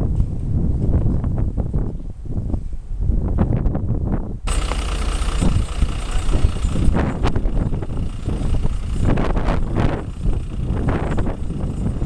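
Wind buffeting the microphone at first. After a sudden change about four seconds in, a fire engine's motor runs steadily, with a few short clatters over it.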